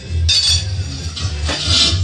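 Metal pry bars and a tire iron clinking and scraping against a steel wheel rim as a tire is levered off by hand. The scraping comes in two stretches, a short one about a third of a second in and a longer one from the middle to near the end. Music plays in the background.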